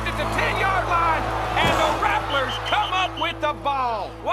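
Dramatic background score of sustained low notes, with voices shouting over it from a football crowd.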